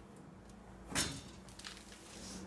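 Brief handling noise: one short scuff about a second in, then a few faint clicks, as a bucket race seat is gripped and pushed in the car's cabin.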